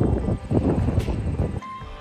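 Wind buffeting a handheld phone microphone outdoors, an uneven low rumble that drops away sharply near the end.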